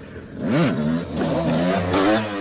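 Motorcycle engine revving: a quick rise and fall in pitch about half a second in, then running at a nearly steady pitch.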